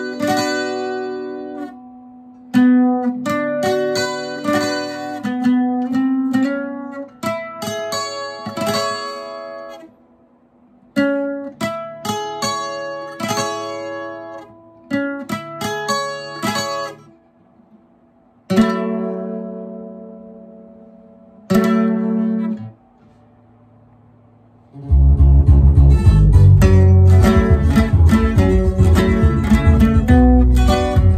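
Takamine twelve-string acoustic guitar playing chords one after another, each left to ring, with short pauses between them. Two single chords ring out and fade, then about five seconds before the end a much louder, fast, continuous strumming begins.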